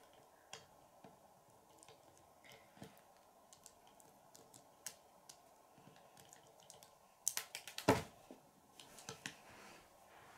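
Small plastic Lego pieces clicking faintly as round studs are pressed onto a minigun's barrel cluster. About three-quarters of the way through comes a louder run of clicks ending in a knock, followed by a few more light clicks.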